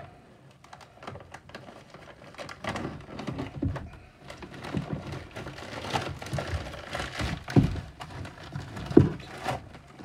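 Plastic bubble mailer being handled and torn open along its pull-off tear strip: irregular crinkling and rustling of the plastic with a few sharp thumps, the loudest in the second half.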